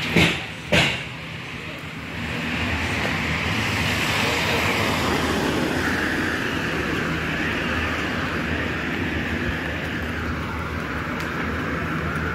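Car engine and tyre noise on a street, swelling about two seconds in and then holding steady. Two sharp knocks come in the first second.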